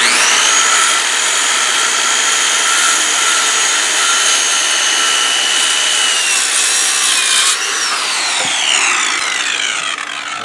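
Corded circular saw started and cutting across a 4x6 pressure-treated timber, running with a steady whine through the cut. At about seven and a half seconds the trigger is released and the whine falls steadily in pitch as the blade spins down.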